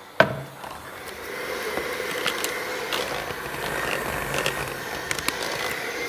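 Electric hand mixer switched on with a click, then running steadily with a whining motor tone as its beaters work flour into dough in a stainless steel bowl, with scattered light clicks.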